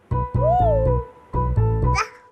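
Upbeat advertising background music with a pulsing bass, in two phrases split by a short break near the middle. About half a second in, a baby gives a brief rising-and-falling coo.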